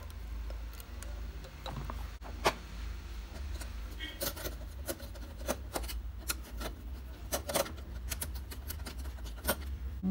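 Screwdriver tightening screws on a charge controller's screw-terminal block, clamping the wire ends: small scattered clicks and scrapes of metal on metal, over a steady low hum.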